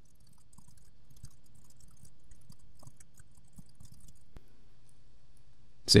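Typing on a computer keyboard: a quick, irregular run of faint key clicks over a low steady hum.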